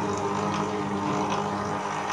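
Electric stand mixer running steadily at low speed, a constant motor hum as its flat beater mixes the dough ingredients in a steel bowl.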